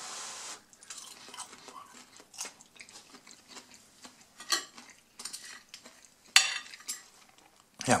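Steel knife and fork handled on a ceramic plate: scattered light clicks and clinks as they are picked up, with one sharper clink a little past six seconds.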